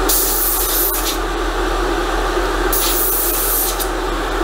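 Airbrush spraying in two hissing bursts of about a second each, over a steady hum.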